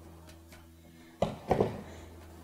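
Half a pumpkin being turned over and set down on a wooden cutting board: two short dull knocks about a second in, over a faint steady low hum.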